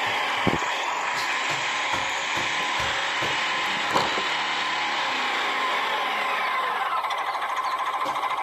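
Small truck engine running steadily, its pitch dropping slightly near the end.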